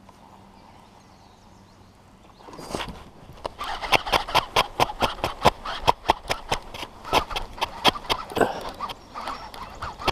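A hooked bass being fought on a rod and reel: after a quiet start, a fast, irregular run of sharp clicks and splashes, several a second, begins about three seconds in and keeps up to the end.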